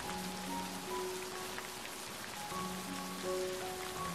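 Steady rain falling, with soft background music of a few long held notes.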